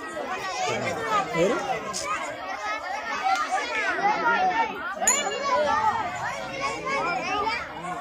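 Many children's voices chattering and calling out at once, overlapping with no break.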